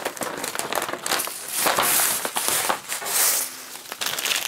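A large sheet of black adhesive vinyl (Oracle 651) crinkling and crackling as the cut waste is peeled off its white backing paper and lifted away. The rustling is loudest in the middle.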